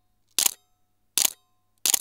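Three camera shutter clicks, about three-quarters of a second apart, with silence between them.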